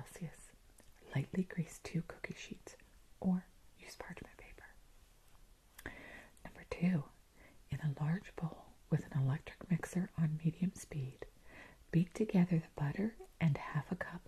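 A woman's soft, whispery voice reading a baking recipe aloud, step by step.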